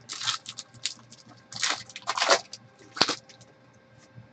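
Trading cards and a foil card-pack wrapper being handled on a table: a few short rustling swishes, with a sharp click about three seconds in.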